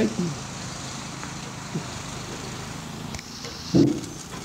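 Small petrol engine of a walk-behind apple-picking machine running steadily with a low hum. A short word is spoken near the end.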